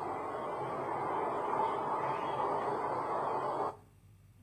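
Steady, rough noise from an old black-and-white newsreel soundtrack, with no voice, cutting off abruptly near the end.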